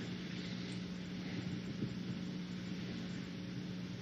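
Steady low hum over a faint even hiss: the room tone of the hall, with no other distinct sound.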